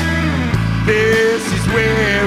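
A live blues-rock band playing, with electric bass, drums and guitar.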